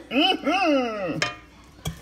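A high-pitched voice in sing-song tones, its pitch gliding up and down for about a second, followed by a short click near the end.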